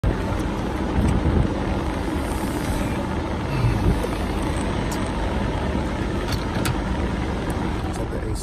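Steady rumble of a car heard from inside its cabin, with a few faint ticks.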